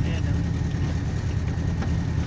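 Honda Civic engine running steadily, a low drone heard from inside the cabin.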